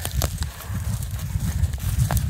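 Wind buffeting a phone's microphone: a low, uneven rumble, with a few faint clicks.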